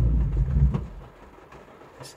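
VW Polo windscreen wiper motor and blades making one sweep across the wet glass, lasting about a second. It is the coded after-wipe (drip wipe), the extra wipe that comes a few seconds after washing the windscreen.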